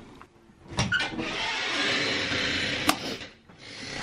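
A steady hiss lasting about two seconds, starting and stopping with a click, then a fainter rushing noise near the end.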